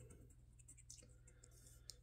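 Near silence with faint light clicks of a coin scratching a scratch-off lottery ticket, one sharper click near the end.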